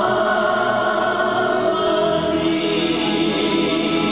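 A mixed choir singing long held notes together.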